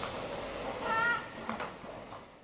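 A short, wavering high-pitched cry about a second in, over a fading tail of the preceding music, followed by two faint clicks.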